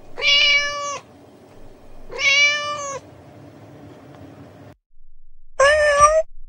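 Domestic cat meowing twice, each meow just under a second long and about two seconds apart, followed near the end by a shorter pitched sound.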